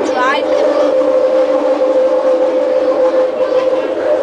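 Bombardier Innovia Metro Mark 1 people-mover car running on elevated track, its linear induction motor giving a steady whine. Brief high chirps sound about a quarter second in.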